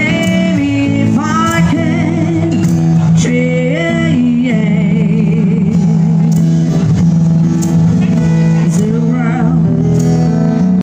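A singer accompanied by acoustic guitar, the voice holding long notes with vibrato over a sustained low note.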